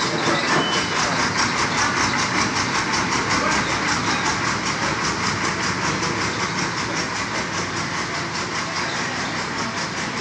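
Diesel engine of a JCB backhoe loader running steadily with an even, rapid pulse as the machine wades through floodwater.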